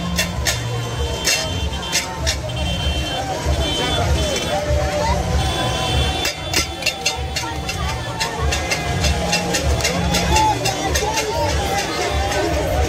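Loud music with a pulsing bass beat over a crowd's shouting voices, with motorbikes riding past.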